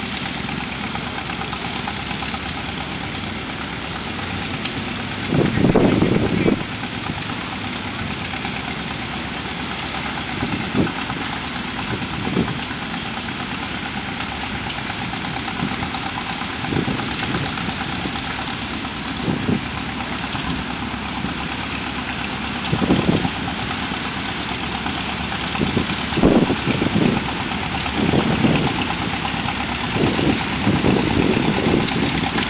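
Small antique farm tractors and riding garden tractors running as they drive past in a slow procession, a steady mix of engine noise with a few short louder swells.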